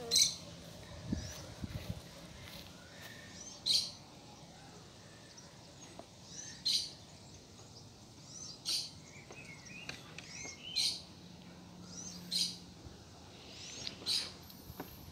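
Small birds chirping: a short, high call repeats every two to three seconds, with fainter chirps between.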